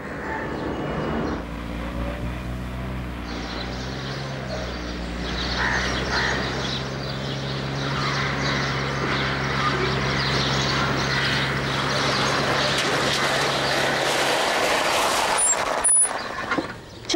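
Maruti Esteem car's engine running at a steady pitch, with a hiss of tyre and road noise that comes in about three seconds in and grows a little louder as the car drives.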